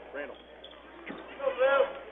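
Basketball gym during a stoppage in play: a ball bouncing on the hardwood court and brief voices calling out, the loudest of them near the end.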